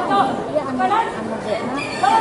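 Several voices talking at once: background chatter.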